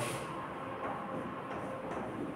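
Chalk strokes on a blackboard, a few faint short scrapes and taps over a steady low room hiss.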